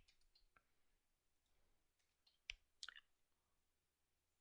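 A few faint, scattered clicks of computer keys and mouse buttons as code is edited, with a quick cluster about two and a half to three seconds in.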